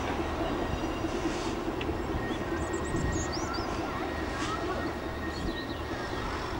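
Distant CIÉ 121 class diesel locomotive running at low power as it moves slowly, a steady low engine rumble, with a few short high chirps over it.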